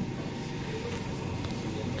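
Steady, even background hiss with no distinct event: shop room tone.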